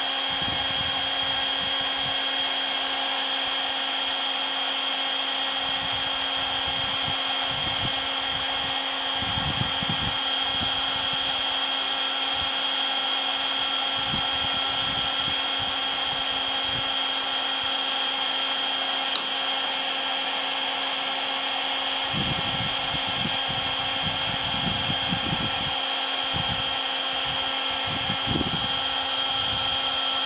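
Electric heat gun running steadily, its fan blowing with a constant high whine. It is playing hot air over sanded polyethylene to melt out the sanding marks and bring back the colour. A single faint click sounds about two-thirds of the way through.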